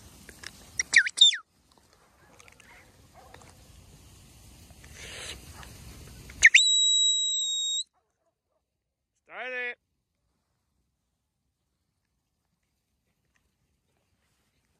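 Whistled commands to a working sheepdog: two quick chirping whistles about a second in, then one long, steady high whistle with a short upward sweep at its start, about six and a half seconds in. A short animal call falling in pitch follows a couple of seconds later.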